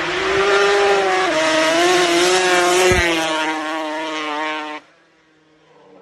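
Quad bike (ATV) engine running at high revs, its pitch wavering up and down as it is driven hard. The note cuts off suddenly a little before five seconds in, and a faint engine note falling in pitch follows near the end.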